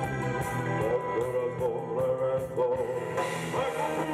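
Live rock band playing: a male singer's wavering, chant-like melody over electric guitar, bass, drums and keyboard, with cymbals washing in brighter about three seconds in.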